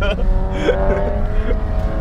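BMW SUV's engine running steadily at low crawling speed over an off-road course, heard from inside the cabin with a constant low rumble; its pitch creeps up slightly.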